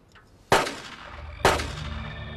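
Two gunshots about a second apart, each with a ringing tail: the execution of two prisoners. Low sustained music tones come in under the second shot.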